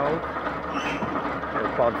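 Voices talking over a low, steady background hum.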